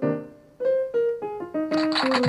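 Stage keyboard with a piano sound playing a melody of single held notes, with a short pause just after the start. Near the end a recorded applause effect comes in over the playing.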